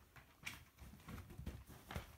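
Cocker spaniel puppies shifting and nuzzling against each other on a rug: faint, irregular soft thumps and rustles, with a sharper click about half a second in and another at the end.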